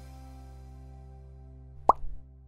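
A soft held chord of background music, with one short, sharp pop sound effect that sweeps quickly upward in pitch near the end.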